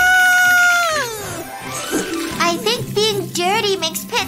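Cartoon baby's wordless voice: one long held "aah" for about a second, then a run of quick short babbling or giggling sounds near the end, over background music.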